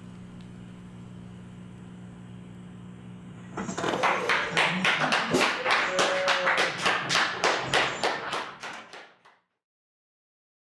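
Applause from a small audience. It breaks out about a third of the way in as a run of sharp claps and fades away shortly before the end. Before it, only a low steady hum.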